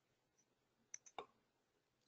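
Near silence, with two or three faint, brief clicks about a second in.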